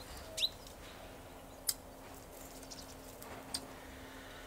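Three short, sharp calls spread a second or more apart, over a faint steady low hum.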